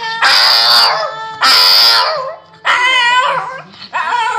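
Shih tzu howling along, three high, wavering calls: two very loud ones in the first two seconds and a third, softer one about three seconds in.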